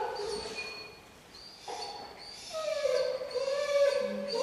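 German Shepherd puppy whining in long, high-pitched whines: one trailing off about half a second in, then another starting a little before two seconds in and running on with small rises and falls in pitch. The whining comes while the puppy noses at a treat held back in the trainer's closed hand.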